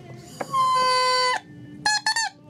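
An oboe reed crowed on its own, with no instrument: one steady buzzy note held for just under a second after a click, then a short, higher crow near the end. It is a pitch test of the cane reed after its tip has been clipped.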